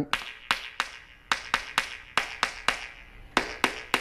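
A wooden stick tapping ceramic floor tiles laid over a concrete slab, a steady run of sharp taps about three a second, each with a short ring. The hollow-sounding taps mark tiles whose thin-set bed did not bond to the concrete underneath.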